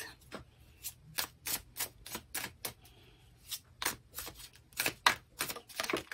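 A deck of oracle cards being shuffled by hand: a string of irregular sharp clicks and snaps, a few a second, as the cards slap against each other.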